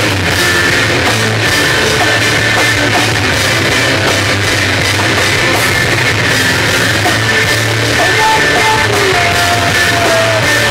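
A rock band playing live and loud: electric guitars, bass and drum kit. Near the end a guitar holds a few high notes that slide downward.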